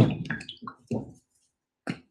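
White acrylic paint squeezed from a plastic bottle in several short squirts over the first second or so, followed by a single sharp click near the end.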